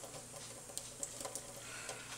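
A thin stream of tap water running into a stainless steel sink, with a few faint scattered ticks and splashes as a cat paws at the falling water.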